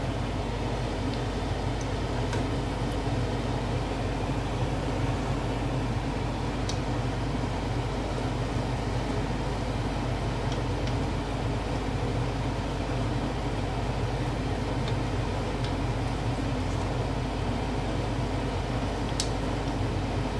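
Egg rolls shallow-frying in oil in a nonstick pan: a steady sizzle over a low hum, with a few faint clicks from tongs and a spatula.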